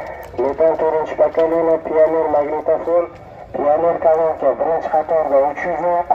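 Speech only: a voice talking almost without pause, thin and narrow in tone like speech over a radio.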